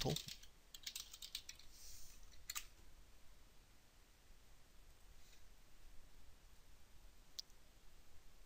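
Faint typing on a computer keyboard: a quick run of keystrokes over about two seconds, then a single click near the end.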